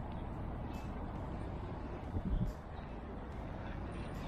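Steady low rumble of city traffic, with a couple of low thumps about two seconds in.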